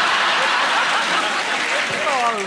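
Studio audience applauding and laughing, a steady wash of clapping that fades near the end.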